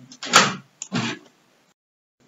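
A man coughing twice in quick succession, the first cough sharp and loud, the second shorter and weaker.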